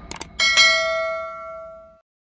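Two quick mouse-click sound effects, then a bell ding about half a second in that rings on with a slow fade and cuts off suddenly: the notification-bell chime of a subscribe-button animation.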